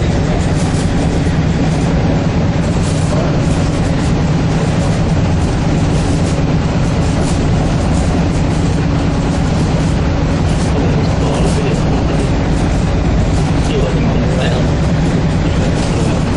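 Walt Disney World Mark VI monorail running at speed, heard from inside the car: a steady low drone from its motors and tyres on the beam, with scattered light rattles and clicks.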